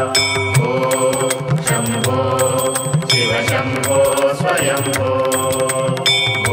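Hindu devotional music for Shiva in the manner of a mantra chant. Sustained melody and drone tones run over a steady beat of sharp metallic strikes, about two a second, that ring on high.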